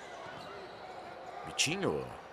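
Court sound from an indoor basketball game: sneakers squeaking on the hardwood floor and the ball bouncing. A short shout comes near the end.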